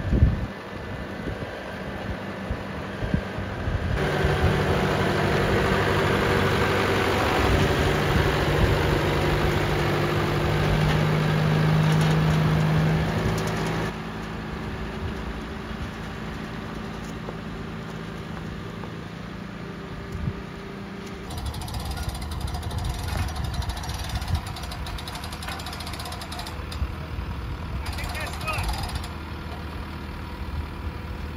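A John Deere tractor's diesel engine running. The engine speeds up about four seconds in, holds higher for about ten seconds, then drops back to a lower, steady run.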